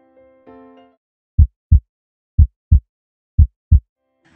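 A few soft electric-piano notes fade out, then a heartbeat sound effect: three loud, deep double thumps about a second apart.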